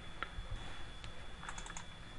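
A few faint clicks of a computer mouse and keyboard, over a steady high-pitched whine and low hum.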